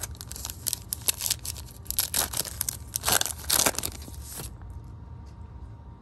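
Foil trading-card pack wrapper being torn open and crinkled by hand, a dense run of sharp crackles that thins out after about four and a half seconds.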